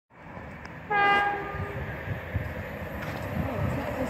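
An approaching LNER InterCity 225 express sounds one short horn blast about a second in. The rumble of the train then grows steadily louder as it nears.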